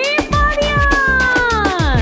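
Birthday song with a steady beat, over which one long meow-like call rises in pitch, holds, and slowly falls away.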